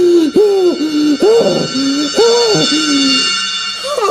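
A man's voice in a strained character voice moaning in distress: a string of short, wavering "ooh" cries that rise and fall. A steady high-pitched ringing tone runs under most of it and stops shortly before the end.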